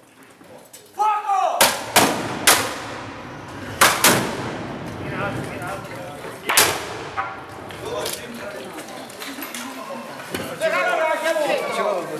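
A ragged volley of black-powder musket shots, about six loud reports over five seconds, each trailing off in echo, just after a man's shouted command. Near the end, people's voices and chatter.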